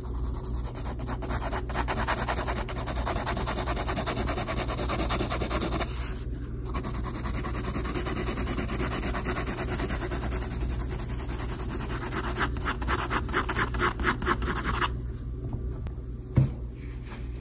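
Mechanical pencil lead scratching across paper in rapid back-and-forth hatching strokes, drawn with the side of the lead. The strokes pause briefly about six seconds in, come as quick separate strokes near the end, then stop about a second before the end.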